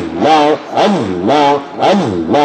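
A man's voice chanting zikr, the repeated invocation of "Allah", into a microphone, in an even rhythm of about two phrases a second with the pitch swooping down and back up in each.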